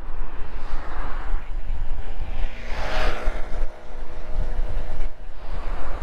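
Wind rumbling on a handlebar-mounted camera's microphone while cycling along a road, with a motor vehicle passing about halfway through, its sound swelling and fading.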